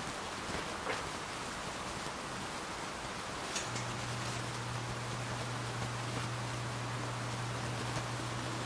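Quiet kitchen room tone: a steady hiss, with a low steady hum coming in about halfway through and a few faint light clicks.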